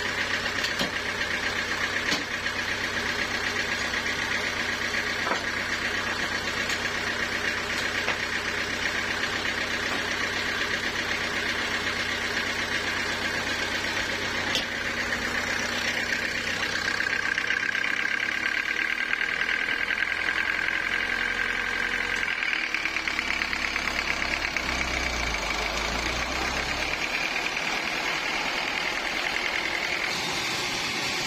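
Homemade band sawmill running steadily, its motor and spinning band saw blade making a continuous mechanical drone with a high whine that shifts a little higher in pitch past the middle.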